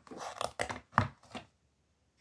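Makeup brushes being handled and pulled from their packaging: a quick flurry of short rustles and knocks over the first second and a half, the loudest about a second in.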